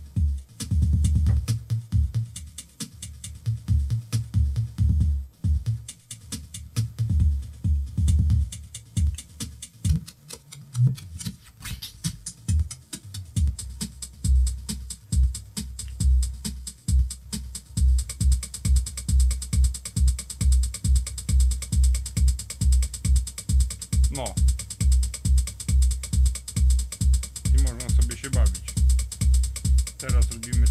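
A homemade electronic drum machine playing through a loudspeaker: a broken, stop-start pattern of kick and bass notes for the first half, then a steady kick at about two beats a second, with a hi-hat ticking over it from a little past halfway. Loose objects on nearby shelves rattle with the bass.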